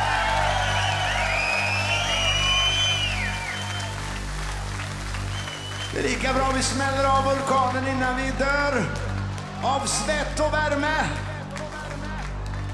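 A rock band holds a low sustained chord after its full-volume playing drops out, while the audience cheers with high whoops. Midway through, a man's voice calls out in long, drawn-out cries over the held chord.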